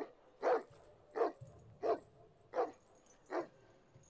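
A dog barking in a steady, even rhythm, about one bark every two-thirds of a second, six barks in all.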